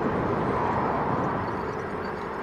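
Yamaha FZ6 Fazer 600's inline-four engine running steadily at low speed, mixed with road and wind noise, heard from the rider's camera.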